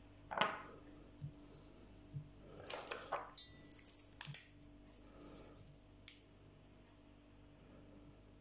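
Scattered light clicks and clinks of small metal tools being handled at a fly-tying vise while a small UV torch is picked up to cure the resin on the fly.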